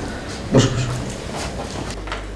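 A single short call from a voice, low-pitched, starting about half a second in and lasting about half a second.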